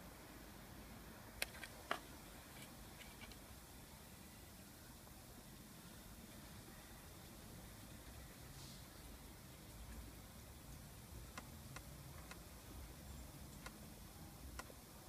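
Near silence, with a few faint clicks from a small plastic electronics module being handled: three about one and a half to two seconds in, and a few more near the end.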